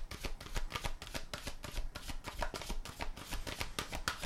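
A deck of oracle cards shuffled by hand, the cards slapping and flicking against each other in a quick, even run of soft clicks.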